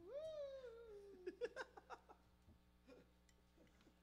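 A person's voice drawing out a high, meow-like 'ooh' that jumps up in pitch and slowly slides down over about a second, followed by a few short clicks; faint overall, with near quiet in the second half.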